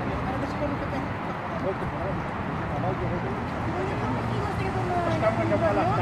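Several people talking to one another, over a steady low background hum.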